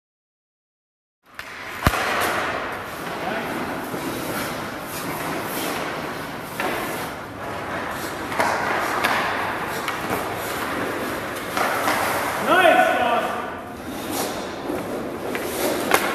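Ice skates scraping and carving on rink ice during a hockey goalie drill, with a sharp knock about two seconds in and a few lighter knocks later. A voice calls out briefly near the end.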